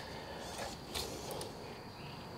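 Faint handling of a Suzuki DL650's side stand as it is swung out by hand: a couple of light metal clicks about a second apart, over quiet garage room tone.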